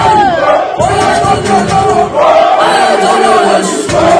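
A large crowd of many voices shouting and cheering together, with music underneath.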